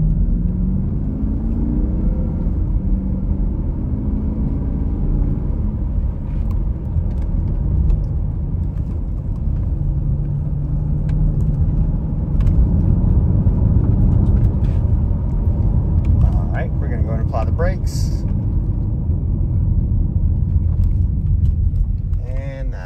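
A 2012 Porsche Cayenne S's 4.8-litre V8 accelerating through the gears, heard from inside the cabin. The engine note rises in the first few seconds, then settles into a steady cruise with a low road and tyre rumble.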